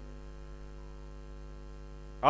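Steady electrical mains hum from the microphone and sound system, a low buzz with a long stack of evenly spaced overtones and no change over the whole pause.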